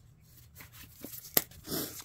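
A small cardboard product box being handled and its seal slit open, with faint scraping and tearing and one sharp click about two-thirds of the way through.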